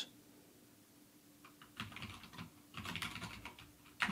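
Typing on a computer keyboard: after a quiet start, a quick run of faint key clicks begins about one and a half seconds in and goes on for about two seconds.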